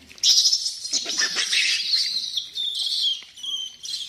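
A sudden burst of loud, high-pitched screaming from a crowd of rhesus macaques, several voices overlapping, starting about a quarter second in and dying away just before the end.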